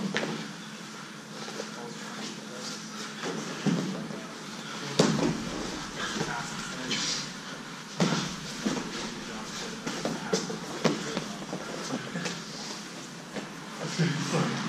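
Two grapplers scuffling on gym mats, with a few sharp thuds, the loudest about five seconds in. Indistinct voices call out over it.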